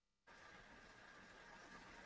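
Near silence: faint room tone and recording hiss, with a moment of total digital silence at the start.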